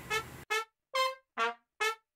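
Music: a brass instrument playing short, separate notes, about five in two seconds, each followed by a silence and jumping between pitches.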